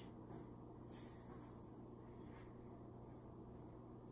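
Faint, soft scrapes of a spatula folding thick banana bread batter in a stainless steel bowl, over a low steady hum: near silence.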